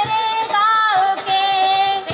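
Women singing a song into microphones, holding long, steady notes with slow bends in pitch.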